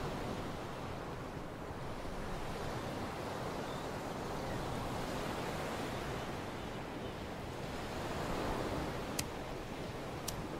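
Ocean surf washing steadily onto a beach, mixed with wind, its level slowly swelling and easing.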